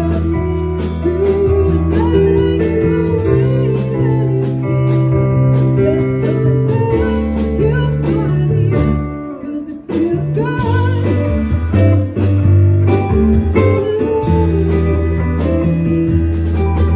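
A live band playing a song: a woman singing over electric guitar, electric keyboard and drums. The band drops out for a moment just before the ten-second mark, then comes back in.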